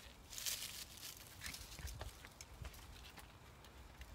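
Footsteps crunching on dry leaf and needle litter over rocky ground: one louder crunch about half a second in, then a few light crackles.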